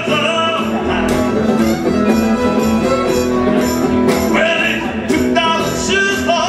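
Live acoustic string band playing a country-bluegrass tune: bowed fiddle, strummed acoustic guitar and plucked upright bass.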